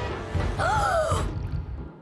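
Cartoon soundtrack music swelling with a low rumble and hiss. A wavering, falling tone enters about half a second in, and the whole thing fades away near the end.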